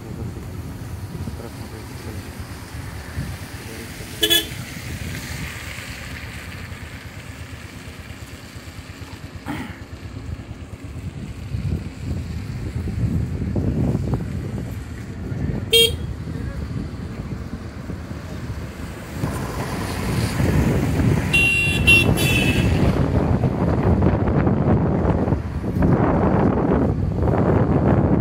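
Steady low rumble of a moving motorbike and wind on the microphone, with short horn toots: one about four seconds in, another near sixteen seconds, and a longer, higher horn about twenty-two seconds in. The rumble grows louder over the last third.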